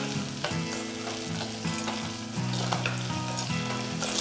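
Shallots, garlic and green chillies sizzling in hot oil in a clay pot, stirred with a slotted metal spatula. Steady low held tones that shift in pitch every second or so run underneath.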